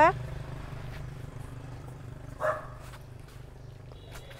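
One short, faint dog bark about two and a half seconds in, over a steady low hum.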